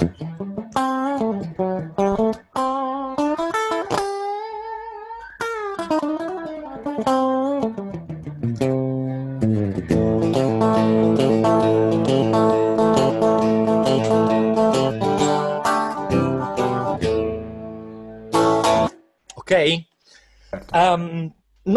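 Electric guitar, a Stratocaster modified with a Super Switch for series pickup combinations, playing a melodic lead line with string bends and vibrato. About halfway through it moves to a steady run of repeated picked chords, which stop shortly before the end.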